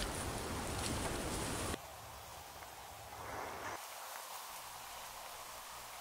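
Faint steady outdoor background hiss that drops off suddenly about two seconds in, with a soft brief rustle about three seconds in.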